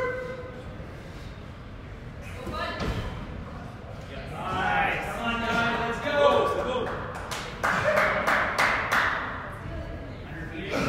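Voices shouting encouragement in a large gym, with a thud as an athlete kicks up into a handstand against a plywood wall. A run of sharp knocks comes near the end.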